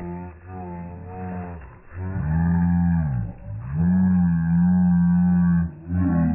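A sound effect edited in over the ride: low, drawn-out pitched calls in three long stretches, the middle one bending up and down, with a muffled, narrow-band quality.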